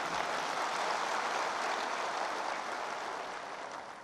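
Large audience applauding, a steady even clapping that eases off a little near the end.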